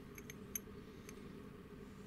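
A few faint metallic clicks as Vespa clutch parts are handled and turned in the hand, over a low steady hum.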